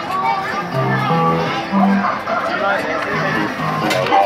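Fruit machine playing an electronic tune of short held notes while its reels spin and come to rest.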